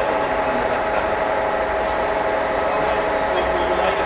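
NC Energy C6266/Y universal engine lathe running, its headstock and feed gearing giving a steady gear whine with several steady tones.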